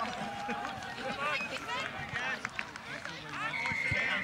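Many overlapping voices calling out and chattering on a sports field, with a steady high whistle blast lasting under a second near the end, typical of a referee's whistle stopping play after a tackle.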